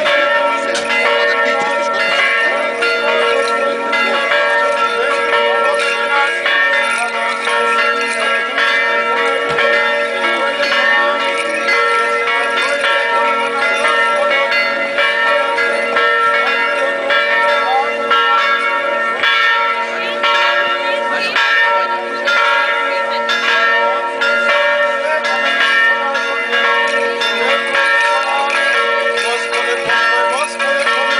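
Church bells ringing continuously, many overlapping strikes with their tones sustained together.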